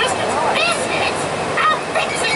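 Steady road and engine noise inside a moving bus, with several short, high-pitched squeaky calls over it.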